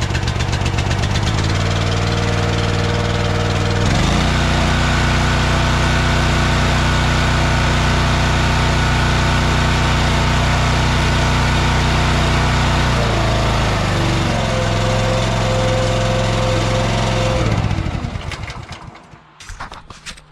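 Honda GX390 single-cylinder engine running just after starting on the first pull, with the choke set. It speeds up about four seconds in and settles lower again later on. Near the end it is shut off and runs down to a stop.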